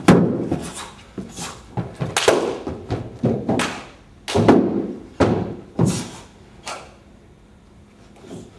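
Irregular series of about a dozen thuds and sharp slaps from a wushu changquan form: feet landing and stamping on a padded floor after jumps and low stances, with hand-on-foot and hand slaps, the loudest impact right at the start.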